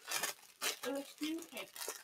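Thin plastic food wrapper crinkling and crackling in short, irregular bursts as it is handled, with a brief hesitant "uh" about a second in.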